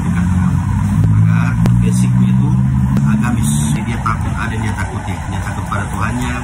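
A motor vehicle's engine running nearby with a low steady hum, easing off after about four seconds.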